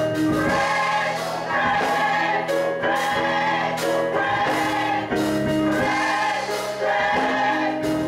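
Gospel choir singing in full harmony, with instrumental accompaniment and a steady beat.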